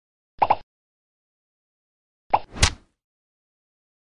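Short fight sound effects dubbed over a silent track: a quick double pop about half a second in, then a pop followed by a louder, sharper hit about two and a half seconds in.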